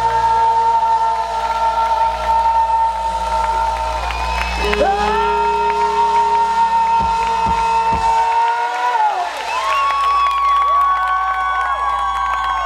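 Live rock band through a festival PA holding long sustained notes at the close of a song, the bass and low end cutting out about three-quarters of the way in, with a large outdoor crowd cheering over it.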